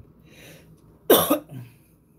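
A man coughs about a second in: a short breath in, then one loud cough with a quick second burst and a smaller one after it.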